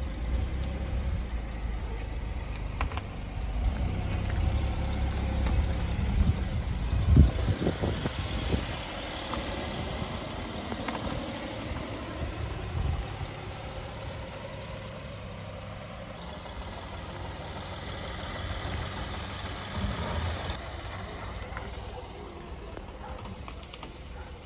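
Opel Astra's three-cylinder engine running at low speed as the car moves off and drives slowly, with a louder thump about seven seconds in.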